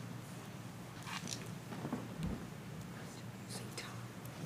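Quiet room tone in a meeting chamber: a steady low hum, faint whispering voices and a few small rustles.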